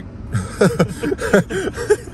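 A man laughing loudly, a string of quick laughs.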